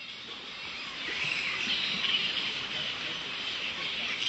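Dense, steady chatter of a daytime camp of grey-headed flying foxes, many high-pitched squabbling calls blending together; it fades in and grows louder over the first second.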